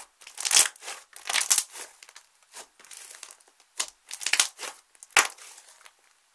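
Hands squeezing and folding thick slime, giving a run of short crackly bursts about every half second as it is pressed and pulled apart, with one sharper pop a little after five seconds in.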